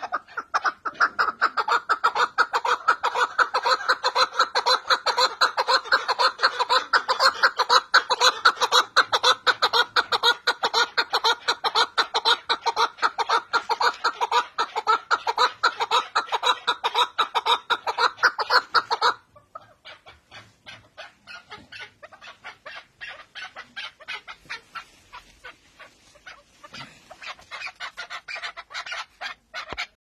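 Male chukar partridge calling: a long, rapid run of loud clucking notes that stops abruptly about 19 seconds in, followed by fainter, sparser clucking.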